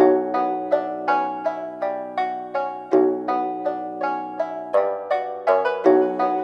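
Trap beat intro: a Japanese-style plucked-string melody of quick, decaying notes, about three to four a second, its phrase starting over about every three seconds. The low end is cut away, with no bass under it.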